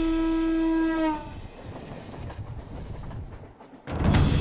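Electric commuter train sounding a single horn blast about a second long that dips in pitch as it ends, followed by the quieter rumble of the train running past.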